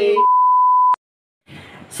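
A steady, high-pitched test-tone beep, the kind played over TV colour bars, lasting just under a second and cutting off abruptly with a click.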